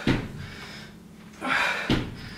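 Feet landing on an exercise mat during squat jumps: two thuds a little under two seconds apart, with a heavy, hissing breath just before the second landing.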